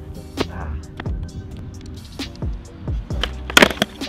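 Background music with a steady, deep beat. Near the end, a quick cluster of sharp clacks: a skateboard's tail popping and its wheels landing on a concrete path in an ollie attempt.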